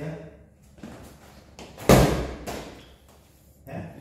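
A single loud thump about two seconds in, a sharp impact with a short ringing tail.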